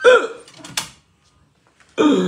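A short vocal sound at the start, then a single sharp clack about three-quarters of a second in: the firebox door of a wood-burning kitchen cookstove being shut.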